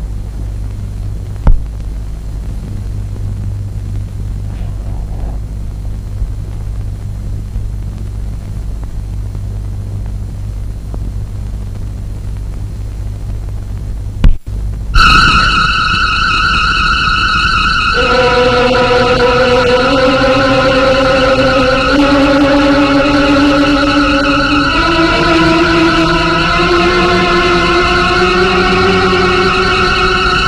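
A steady low hum with two sharp clicks, then about halfway through a suspenseful film score starts suddenly: a high, wavering held synthesizer-like tone, joined a few seconds later by a slow lower melody moving step by step.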